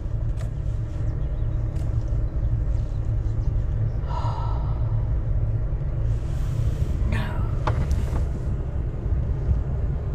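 Steady low rumble of a car driving slowly on a tarred road, heard from inside the vehicle.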